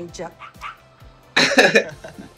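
Background music under TV show audio, with a short, loud vocal outburst, a laugh or cough, about one and a half seconds in.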